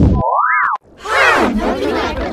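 A cartoon boing sound effect that rises and falls in pitch and cuts off suddenly. After a brief gap, about a second in, come loud, heavily pitch-shifted voices whose pitch sweeps steeply down.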